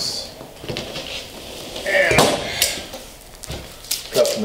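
Fabric and tools being handled on a plywood cutting table: rustling with a few scattered knocks and metal clinks, the loudest cluster about two seconds in.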